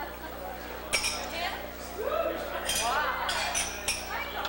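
Party chatter of many voices in a room, with glasses and dishes clinking. There is a sharp clink about a second in and a few more near the end.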